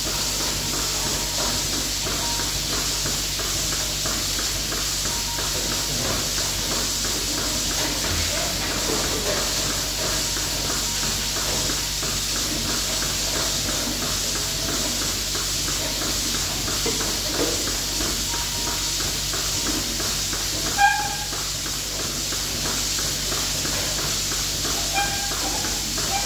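Goat milking machine running: a steady hiss from the vacuum system, with a fast, regular ticking from the pulsators. A single sharp knock about three-quarters of the way through.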